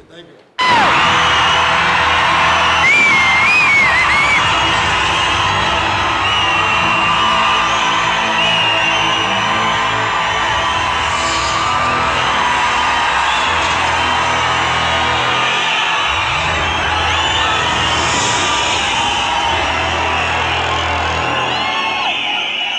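A film soundtrack playing loud in a cinema hall, with an audience cheering and whooping over it. It starts suddenly about half a second in and keeps on steadily.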